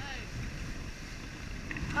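Steady rush of wind over the microphone and water running along the hulls of a Prindle 18-2 catamaran sailing at speed, with a low rumble underneath.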